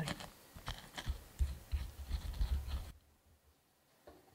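Pestle crushing garlic and red chili in a wooden mortar (ulekan): irregular scraping and knocking for about three seconds, then it stops suddenly.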